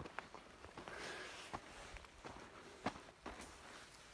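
Faint footsteps, a handful of short, irregularly spaced crunches over a low background hiss.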